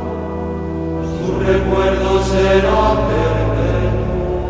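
Sung responsorial psalm music: held chant-like voices over sustained chords, with a new low chord coming in about a second in.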